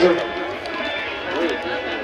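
A lull in a live qawwali: harmonium reeds held quietly under a few low voices, between loudly sung phrases.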